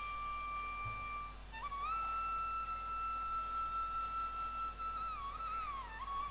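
Soft flute music: a steady tone that stops about a second and a half in, then a long held note that bends slightly and slides downward near the end.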